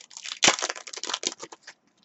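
Foil wrapper of a trading card pack being torn open and crinkled by hand: a quick run of crackles, the sharpest tear about half a second in, dying away before the end.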